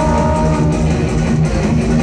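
Loud rock music at an idol live performance, playing continuously.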